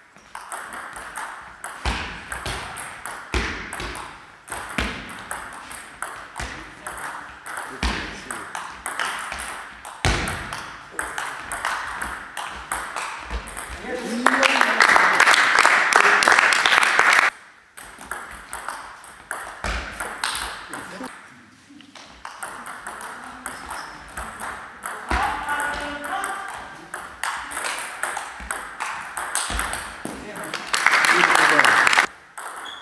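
Table tennis rallies: the ball clicks sharply off paddles and table in quick alternating hits, with short gaps between points. About halfway through there is a brief shout, then a few seconds of loud crowd noise that stops abruptly. Voices are heard near the end.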